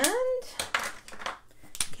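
A woman's drawn-out "and", rising in pitch, then a short scratchy rubbing of a felt-tip marker colouring on paper, with a light click just before she speaks again.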